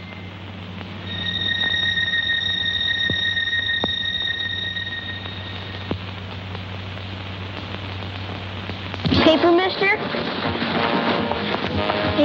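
Film soundtrack: a steady high tone held for several seconds over a low hum, then, about nine seconds in, voices and music start up loudly.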